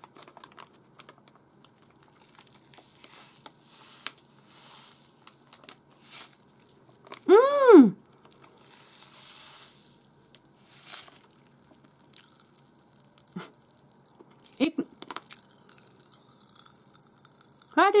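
Plastic wrapper of a popping-candy packet crinkling and tearing as it is opened and tipped up, with one short voiced hum about halfway through. From about two-thirds of the way in, popping candy crackles in the mouth with a fine, high fizzing crackle.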